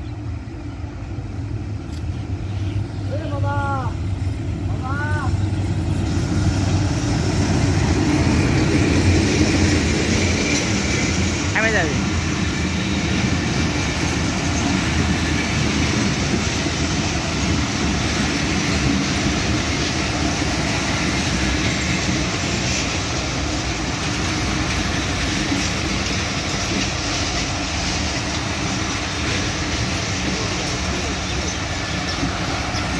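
A diesel-hauled passenger train approaches and passes close by. The locomotive's rumble builds over the first several seconds, then the coaches roll past with a steady rumble and clatter on the rails.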